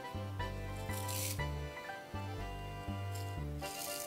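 Background music: a bass line stepping between notes under held chords.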